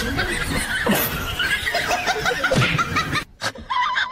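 A person laughing, ending in a quick run of chuckles. The sound cuts off suddenly shortly before the end.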